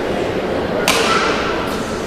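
Badminton racket striking a shuttlecock. A sharp crack about a second in is the serve, and a fainter return hit comes near the end, each ringing briefly in the hall over a steady crowd murmur.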